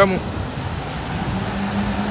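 Steady city street background noise, a low hum of traffic, between a man's words.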